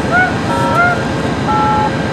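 VIA Rail P42DC diesel locomotive idling steadily while the train stands at the platform, with a few short chirping tones and brief high beeps over the engine.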